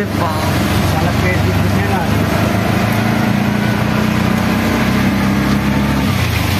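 An auto-rickshaw's small engine runs steadily while the vehicle is moving, heard from inside the open cab, with a continuous hiss of road noise.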